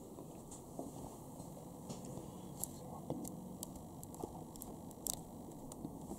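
Faint handling noise: scattered light clicks and rustles over a low steady hiss.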